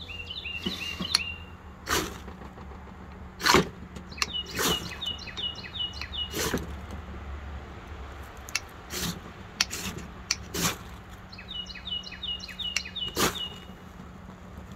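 Ferrocerium rod struck with a scraper about eight times, each stroke a short, sharp scrape throwing sparks onto fatwood shavings, which catch near the end. A bird sings short runs of quick chirps in the background.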